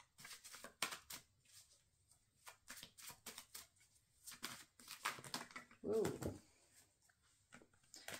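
A deck of tarot cards shuffled by hand: a faint, irregular run of soft card slaps and rustles as the cards are passed from hand to hand.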